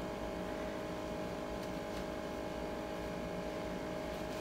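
Room tone: a steady hum with a faint, constant thin tone and no distinct events.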